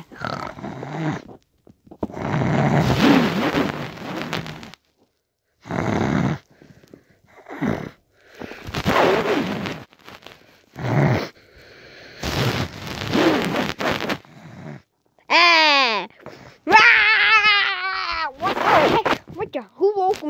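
A child's voice making wordless play noises: a run of breathy, rasping bursts, then two high, wavering cries near the end.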